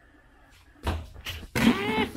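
Cloth rubbing and knocking against the camera and its microphone as the lens is covered. It comes in rough bursts starting about a second in and is loudest near the end.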